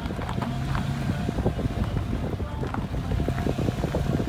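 Car driving along a mountain road, heard from inside the cabin: a steady low engine and road hum with wind buffeting the microphone and frequent small clicks and rattles throughout.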